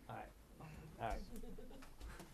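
Quiet speech in a small meeting room: a man says "right" about a second in, with low murmuring voices around it.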